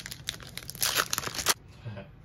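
Upper Deck hockey card pack's foil wrapper being torn open by hand, a crinkling rip that stops abruptly about one and a half seconds in.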